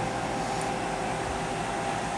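Electric box fan running steadily, a smooth rush of air with a faint constant hum, powered through a 400-watt inverter from a small 12-volt battery.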